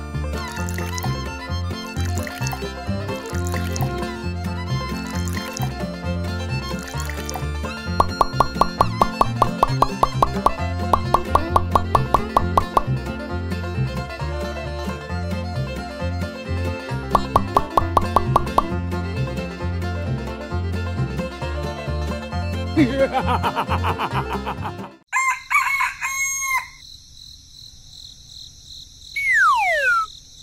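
Background music with a steady beat that stops suddenly about five seconds before the end. A rooster then crows, followed near the end by a falling, whistle-like glide.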